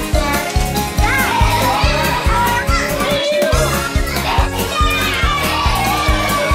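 Upbeat music with a steady bass beat of about two a second that drops out briefly a little after three seconds in, under a noisy crowd of young children's voices.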